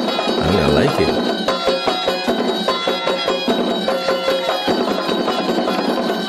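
Traditional Zaouli drum-and-flute music: fast, dense drum strokes with a held flute melody over them.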